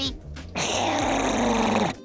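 Cartoon baby dragon's growl, a rough rasping snarl lasting about a second and a half that sinks slightly in pitch.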